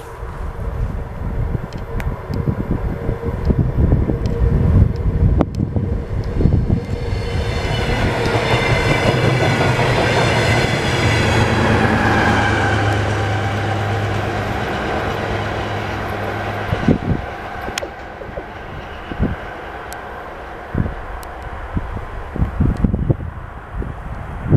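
A DR1A diesel multiple unit passing at speed: the engine and wheel noise build over several seconds, are loudest as the coaches go by, with a drop in pitch as they pass, then fade away.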